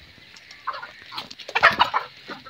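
Chickens clucking: a few short calls, with the busiest run of clucks near the end.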